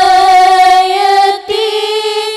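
Female voices singing an Arabic sholawat through microphones and a PA. They hold one long note, dip briefly, then move to a slightly higher held note about a second and a half in.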